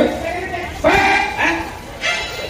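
A man's voice calling out 'come on, come', then a short, loud, pitched call about a second in.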